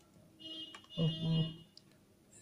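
Pen writing on paper with a brief high-pitched squeak about half a second in, then a short wordless voiced hesitation from the man's voice about a second in.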